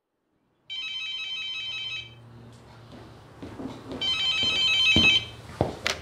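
A telephone ringing twice, each ring a fast trilling burst of about a second and a quarter, followed by a couple of sharp clicks near the end as the receiver is picked up.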